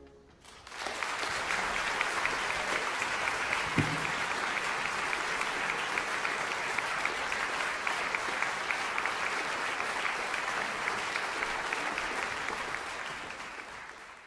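Concert audience applauding. The clapping comes up about half a second in as the orchestra's last chord dies away, holds steady, and fades out near the end, with one low thump about four seconds in.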